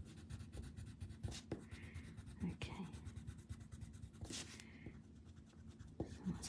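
Faint scratching of a coloured pencil being worked in small strokes over a paper tile.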